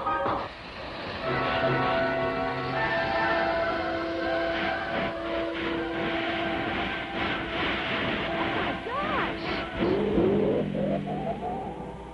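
Orchestral cartoon score mixed with noisy sound effects, with rising, sliding tones near the end.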